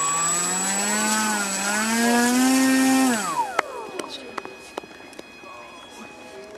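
RC trainer plane's brushless electric motor and propeller throttling up with a steadily rising whine, then cut about three seconds in and spinning down. The plane, on 3D-printed skis in powdery snow, does not get moving. A few light knocks follow.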